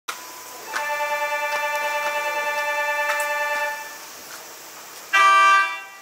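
A steady pitched electric signal tone with a slight fast pulse sounds for about three seconds. About five seconds in, the Mitake Tozan Railway cable car gives one short, loud horn toot.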